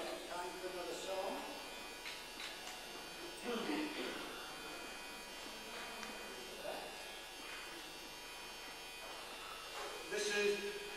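Steady electrical buzz and hiss from the sound system, with a man's voice speaking faintly in short snatches, near the start and again about three and a half seconds in.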